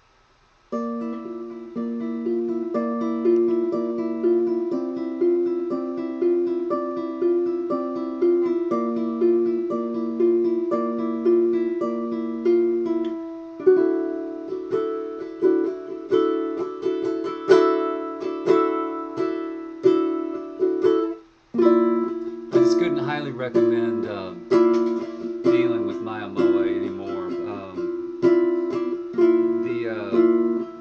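Mya Moe striped-myrtle tenor ukulele with a wound low G string, played through its K&K pickup and a vintage Fender Vibro Champ amp turned up a little. Evenly picked arpeggios begin about a second in, change to strummed chords about halfway, and after a short break go into a busier passage with lower moving notes.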